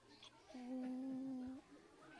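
A person humming one level, unbroken note with closed lips for about a second, starting about half a second in.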